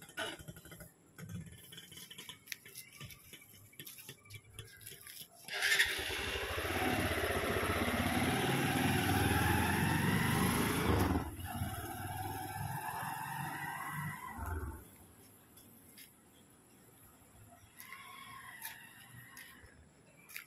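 A motorcycle engine running close by. It comes in loud about six seconds in, drops to a lower level after about five seconds, and stops at about fifteen seconds.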